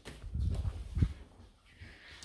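Low thumps and handling noise from moving about with the camera, with one sharp knock about a second in.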